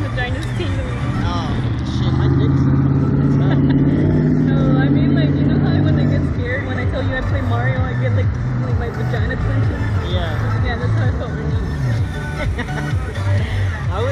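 Music and voices mixed together, over a steady low hum. About two seconds in, a louder low steady drone joins and lasts about four seconds.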